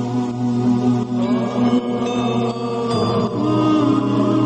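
Background devotional music: a steady drone with a chanting voice that glides in about a second in.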